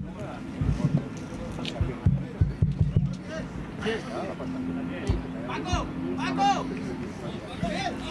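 Voices calling out on and around a football pitch during play, fainter than a close commentator, with a few short low thumps early on.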